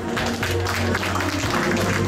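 Audience applauding, a dense patter of clapping hands, over background music with long held notes.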